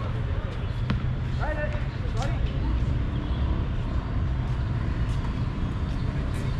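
A basketball bouncing on an outdoor hard court, a few sharp knocks, with players calling out briefly between about one and a half and two and a half seconds in, over a steady low rumble.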